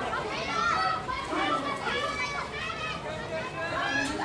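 Several high-pitched young voices shouting and calling out across a field, overlapping one another.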